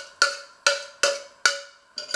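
Stainless steel saucepan knocked with a utensil to scrape the food out onto a plate: about five sharp metallic knocks, roughly two a second, each ringing briefly.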